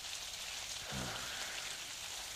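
Steady rain falling, a radio-play sound effect, with a short faint vocal sound about a second in.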